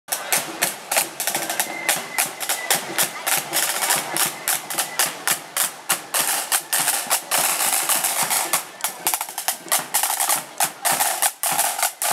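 Snare drums of a marching flute band playing a rapid street beat with rolls, drums alone with no flute melody.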